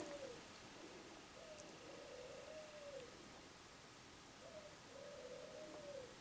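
Two faint, drawn-out animal calls, each about a second long, over near-silent room tone.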